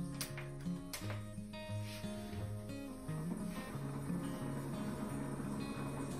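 Background music with slow, held notes, and two short clicks in the first second.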